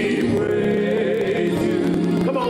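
Gospel singing: voices singing together in long, wavering held notes, with no break.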